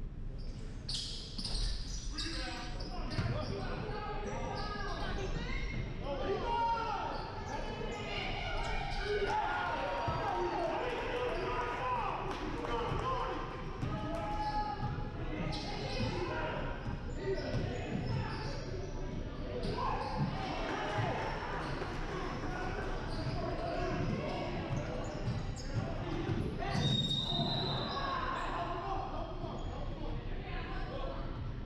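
A basketball bouncing on a hardwood gym floor, with indistinct shouting and chatter from players and spectators echoing in a large hall. A brief high-pitched tone sounds near the end.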